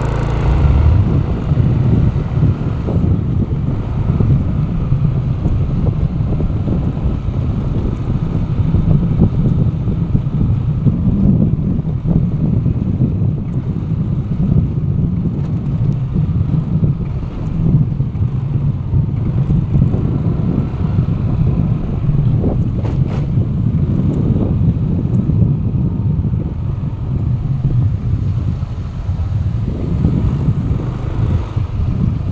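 Steady low rumble of wind buffeting the microphone, mixed with road and engine noise from travelling along a street.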